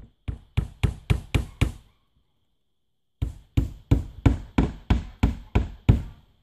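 Hammer driving nails into cedar siding: a quick run of about six blows, a pause of about a second and a half, then about ten more, at roughly three to four blows a second.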